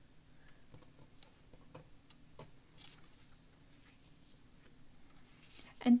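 Faint rustling and a few light taps of paper sheets being handled and laid down on a table.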